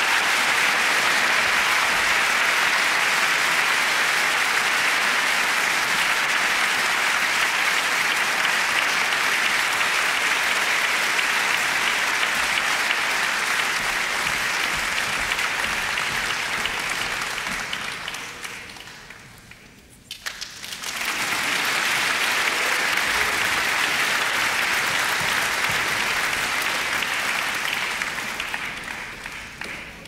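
Audience applause for a choir: steady clapping that dies away about two-thirds of the way through, then starts up again and fades out near the end.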